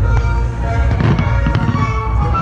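Fireworks display, with a few sharp pops and crackling from fountains and comets over steady music.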